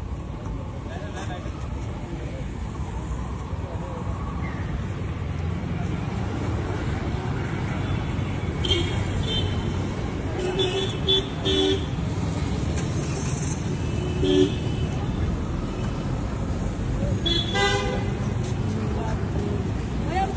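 Steady rumble of road traffic on a busy city street, with several short vehicle horn toots from about ten seconds in.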